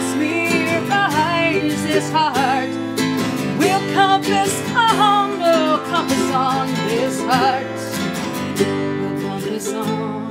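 Celtic ballad played on a strummed acoustic guitar and a ukulele, with a woman singing over them. Her voice drops out near the end, leaving the two instruments playing on.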